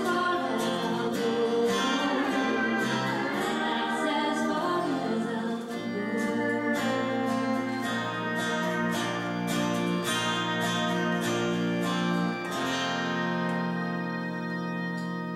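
Live band playing a slow country song: a woman sings over acoustic guitar for the first few seconds, then the guitar carries on with plucked notes. Near the end a last chord rings out and fades.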